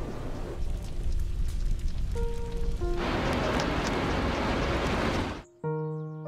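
Storm sound effects of wind and rain under sparse, slow music notes. The storm noise swells about halfway through and cuts off suddenly near the end, leaving a sustained chord of music.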